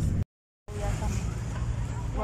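Low rumble of a vehicle ride heard from inside, cut off abruptly a quarter second in by a short dead silence, then a quieter outdoor low hum with faint distant voices.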